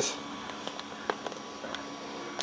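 Faint crinkling of a foil anti-static bag being handled and cut open with small flush cutters, with a few light, scattered clicks.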